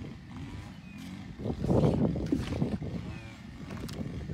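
A Siberian tiger growling low and rough over its food, loudest from about a second and a half in for just over a second.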